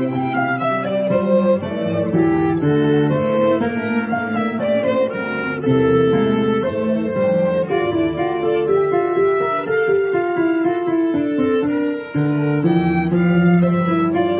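Violin bowed in a steady run of moving notes, playing a lively dance tune over lower accompanying notes, with a brief break in the phrase about twelve seconds in.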